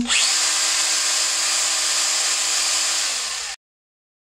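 A small Stihl battery-powered garden tool running with no load: it starts at once, runs steadily for about three seconds with a steady whine, begins to slow and then cuts off abruptly.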